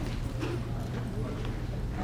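Still-camera shutters clicking irregularly, a few sharp clicks spread across the two seconds, with low murmured voices underneath.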